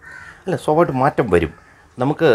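A bird calling about four times in quick succession, starting about half a second in.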